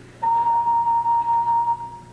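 A steady electronic beep at one pitch, starting a moment in and lasting about a second and a half.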